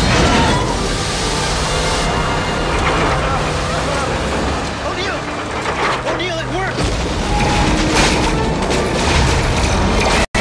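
Film sound effects of the 1998 Godzilla creature struggling while tangled in a bridge's steel cables: a steady low rumble with booming impacts and rising-and-falling cries about five to seven seconds in.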